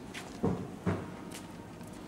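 Footsteps on cobblestones: two steps, about half a second apart.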